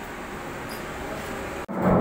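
Steady background noise with no distinct events. About 1.7 s in, it cuts off abruptly and a louder recording begins, with a man starting to speak.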